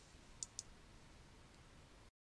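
Two quick clicks of a computer mouse button, about a fifth of a second apart like a double-click, over near-silent room tone.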